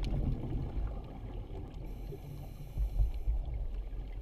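Underwater sound picked up through a dive camera's housing: a low, muffled rumble of water movement, with a faint hiss from about two seconds in until a little past three.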